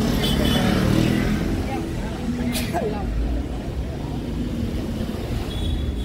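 Street traffic: motor scooters and cars running past, with a steady engine rumble and voices mixed in.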